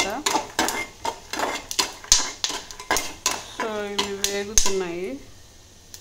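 A spatula stirring roasting peanuts in a steel kadai, with repeated clinks and scrapes against the pan through the first three and a half seconds.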